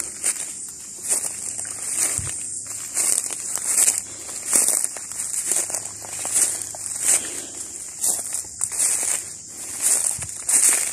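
Footsteps crunching over dry leaf litter, sticks and grass, about one step a second, with crackling and rustling as the walker pushes through the bush.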